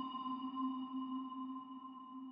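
Ambient meditation music: a struck bell tone ringing on and slowly dying away, a low tone with a few higher overtones sounding together.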